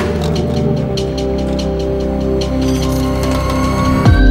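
Background music: sustained chords over a low bass that comes in about a second in, with light high ticks.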